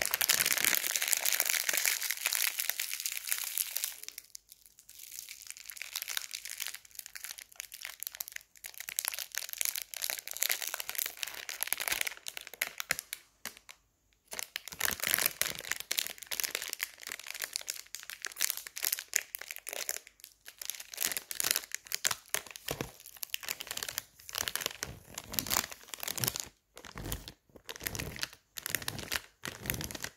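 A shiny silver foil wrapper crinkled and crumpled between the fingers close to the microphone: a dense crackling, loudest in the first few seconds, with a short pause near the middle. It breaks into short separate crinkles over the last few seconds.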